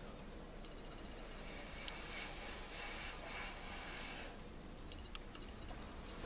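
Faint breath blown across wet acrylic paint on a canvas: a soft hiss that swells for a couple of seconds in the middle and then fades, with a few tiny clicks.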